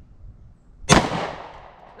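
A single pistol shot about a second in, sharp and loud, followed by its echo dying away over most of a second.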